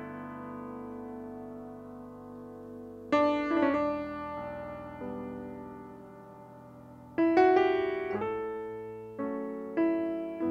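Grand piano playing slow chords, each struck and left to ring and fade: one chord carried over from before is dying away, fresh chords come about three and seven seconds in, and two more near the end.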